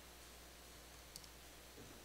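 Near silence with a couple of faint computer keyboard key clicks, one about a second in and a softer one near the end.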